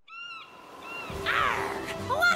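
Seagull cries, a pitched arching call at the start and a shorter one about a second in, followed by a falling whoosh.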